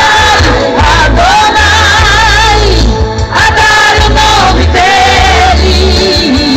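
Live Christian worship music over a loud stage PA: singers holding long, wavering notes over a band with heavy bass, with crowd noise underneath.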